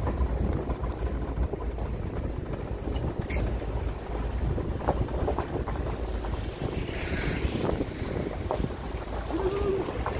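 Wind buffeting the phone's microphone while riding in the open at speed, over a steady low rumble of the vehicle on a gravel road. A brief pitched tone sounds near the end.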